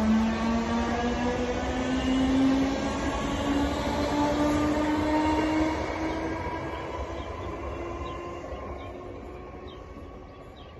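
Class 313 electric multiple unit accelerating away, its traction motors giving a whine that rises steadily in pitch over the rumble of the wheels on the rails. The sound fades away over the last few seconds as the train draws off.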